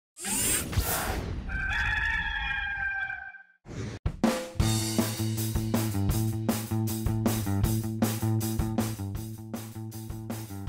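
A recorded rooster crowing once, after a short whoosh. About four seconds in, a swoosh and a hit lead into rock music with a steady beat and repeating bass notes.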